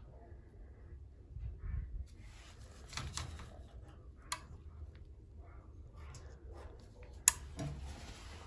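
Soft rustling and handling noises over a low steady hum, with a brief click about four seconds in and a sharp click near the end.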